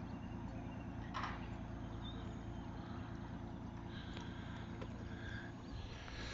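Faint, steady low hum of a motorboat's engine as the boat heads away across the water, with one light knock about a second in.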